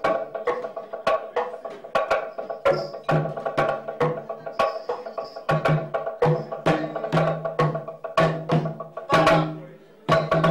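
Balafon and rope-tuned hand drums playing together in a fast, steady rhythm: mallet-struck wooden bars ring out pitched notes over hand strokes on the drums, several strikes a second, with a low note recurring underneath.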